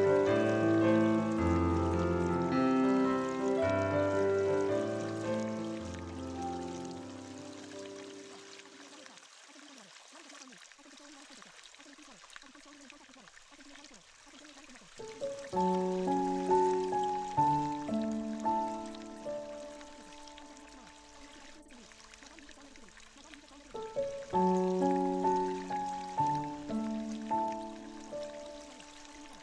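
Solo piano music that fades away in the first third and comes back about halfway through, then again near the end, over a quiet background of running, trickling water that is heard on its own in the gap.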